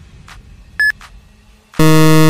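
Quiz countdown-timer sound effect: one short high beep a little under a second in, then a loud, low buzzer near the end signalling time out.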